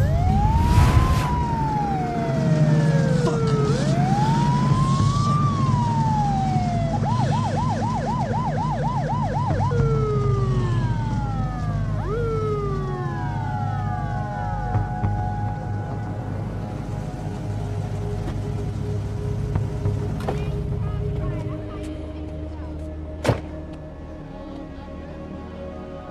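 Police car siren signalling a driver to pull over: two slow rising-and-falling wails, then a fast warbling yelp, then a few falling whoops, over a low steady rumble. A single sharp click near the end.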